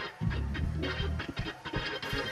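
Fast church 'shout' music: an organ playing over a quick, steady percussive beat.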